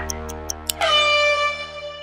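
Closing bars of a TV show's intro theme music: a held low drone under quick clock-like ticks, then a bright sustained chord just under a second in that rings and fades out.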